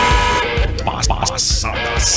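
Segment-opening theme music with a steady beat of about two beats a second, short hissing bursts and gliding voice-like sounds mixed in.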